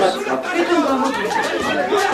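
Several people talking at once, a steady chatter of voices.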